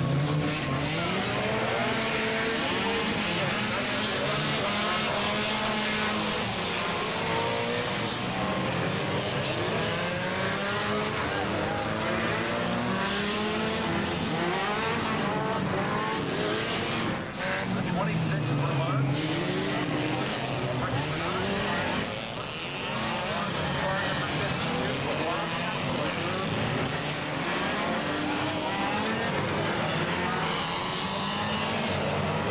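A field of four-cylinder enduro race cars running together on the track, many engines overlapping, their pitch rising and falling as they rev.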